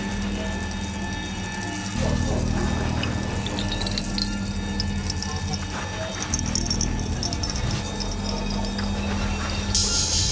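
Electronic music built from glitch and noise textures: a sustained low drone chord that shifts about two seconds in and again past six seconds, with scattered high glitchy chirps over it, and a bright noise wash that swells in just before the end.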